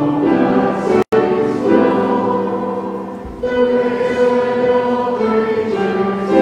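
Church choir and congregation singing a hymn in slow, held notes. The sound cuts out for an instant about a second in.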